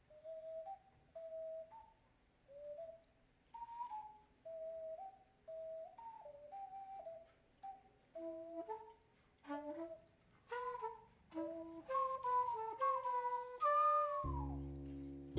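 Instrumental music: a lone melody of short stepwise notes with a pure, flute-like tone. About eight seconds in, a second, lower line joins in harmony, and the phrases grow louder toward the end.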